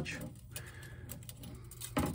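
Faint handling of a thin metal wind spinner: its painted strips and bolts give a few light clicks and rubs.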